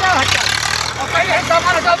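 Tractor diesel engine running with a low, steady drone, with people's voices talking over it.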